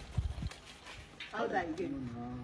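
A few soft low knocks in the first half second, then a person's voice, not forming words, from a little past the middle.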